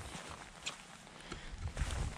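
Footsteps on wet, muddy grass: soft low thuds with a few faint clicks, a little louder near the end.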